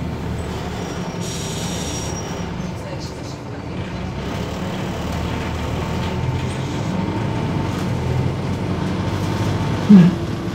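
Cabin noise of a MAZ 206 city bus under way: its Mercedes-Benz OM904LA diesel and Allison automatic gearbox running with a steady low rumble, road noise and a faint steady whine, growing slightly louder in the second half. A brief loud thump right at the end.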